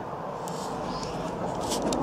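Handling noise from a handheld camera being lowered: a steady rustle with a few light clicks and knocks, growing slightly louder near the end.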